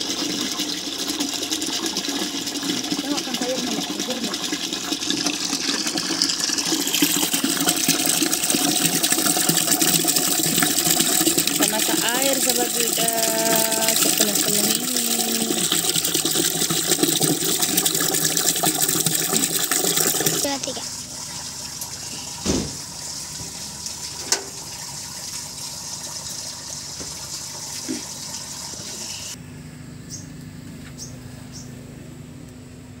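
A stream of water pouring and splashing into a large metal cooking pot as it fills. The pouring stops suddenly about two-thirds of the way through, leaving a quieter background with two brief knocks.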